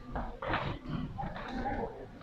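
Indistinct low voices with scattered movement noise, uneven and without music.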